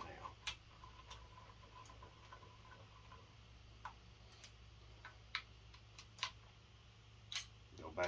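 A few sharp, isolated clicks, about six spread over several seconds, from a ratchet wrench snugging down the rocker shaft bracket bolts on a Mopar 360 V8. The bolts draw the rocker shaft down against the valve springs, opening some of the valves.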